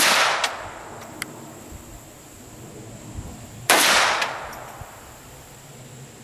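Two pistol shots about three and a half seconds apart, each a sharp crack followed by a short echo that dies away.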